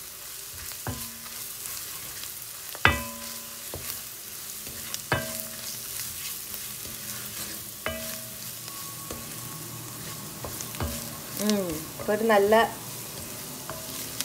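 Onions, masala and tomato paste frying with a steady sizzle as a wooden spoon stirs them round a cast-iron pot. Every few seconds the spoon strikes the pot with a sharp knock that rings briefly.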